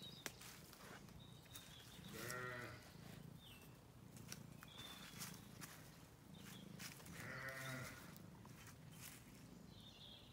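Sheep bleating twice, each a wavering call of about a second, the second a few seconds after the first. Faint short bird chirps sound in between.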